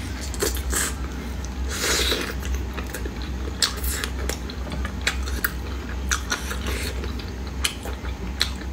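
Close-miked chewing and biting of glazed chicken wings: irregular wet smacks and sharp little clicks as meat is bitten and pulled off the bone. A steady low hum runs underneath.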